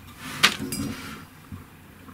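A single sharp metallic clink about half a second in, as a hand works the valve fitting on the stainless steel bubbler canister of an oxy-hydrogen generator. Faint handling noise follows.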